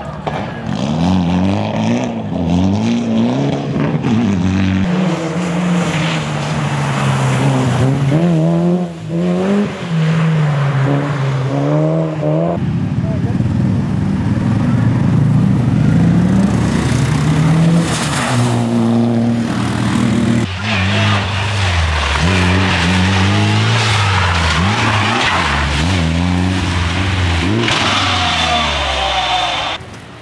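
Mitsubishi Lancer rally cars driving hard one after another on a slushy stage, engines revving up and dropping back again and again as they shift gears, with tyres hissing through the slush.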